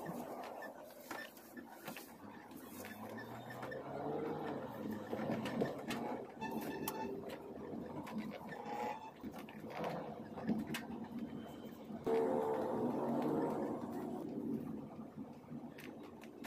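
Inside a car driving slowly: low engine and road noise, with indistinct voices in the background.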